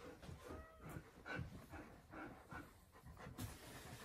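A dog panting faintly, a few short breaths a second.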